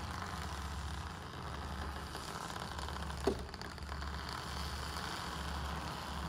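Electric aircraft tug's drive motor running steadily under load, a low hum with an even hiss, with one brief squeak about three seconds in.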